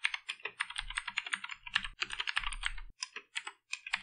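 Typing on a computer keyboard: a quick run of key clicks, broken by a couple of short pauses.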